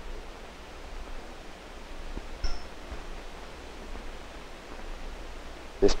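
Steady hiss of an old 16 mm film soundtrack, with a faint short knock a little over two seconds in.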